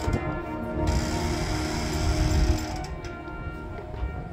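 Marching band holding sustained chords over a low drum rumble, with a rattling, clicking percussion texture in the first second; the music grows softer about three seconds in.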